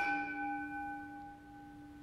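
A bell struck once, ringing with several clear tones that fade over about two seconds: the bell marking the consecration and elevation of the bread at the Eucharist.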